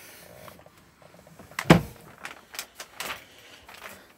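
Handling knocks: one solid thump about one and three-quarters seconds in, with lighter knocks and clicks before and after it, as a cover or lid in the caravan's seat base is shut and put back.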